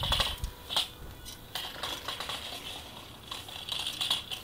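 Electric drive motors of a ride-on motorised platform running on grass, with a high whine that comes and goes and light metallic clinks and rattles from the frame and casters.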